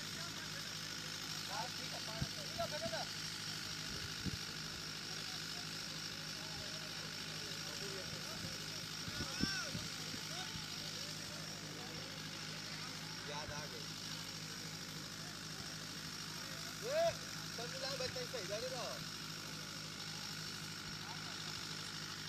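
Faint, distant voices of cricket players calling out across the ground, over a steady background hum. The voices are briefly louder about seventeen seconds in, and there are a few soft knocks.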